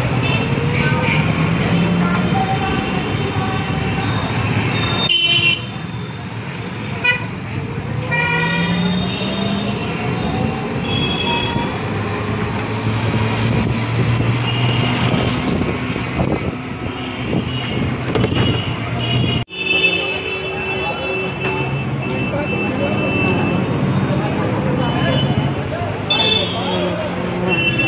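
Busy street traffic with many short vehicle horn toots sounding again and again over a steady rumble of engines, with voices mixed in. The sound breaks off abruptly twice, about five seconds in and again past the middle.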